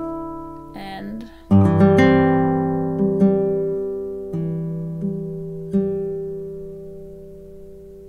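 2017 Masaki Sakurai nylon-string classical guitar played fingerstyle in a slow, soft arpeggio. A fuller chord comes about one and a half seconds in, then single plucked notes about once a second, and the last ones are left to ring and fade over the final two seconds at the end of the phrase.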